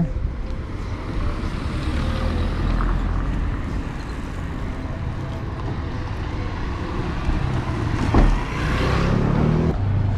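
Road traffic with a steady low engine rumble from vehicles close by, and a single short knock about eight seconds in.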